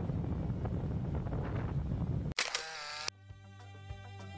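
Motorcycle engine and wind rumble heard from a helmet camera while riding, cut off abruptly about two and a half seconds in by a camera-shutter sound effect, after which background music begins.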